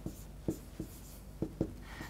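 Writing by hand on a board: faint scratching with about five short taps as the letters are stroked out.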